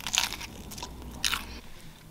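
A person biting into and chewing a salad sandwich of soft white bread with lettuce, grated carrot and cucumber, close to the microphone: two short crunchy bites, one just after the start and another a little past a second in.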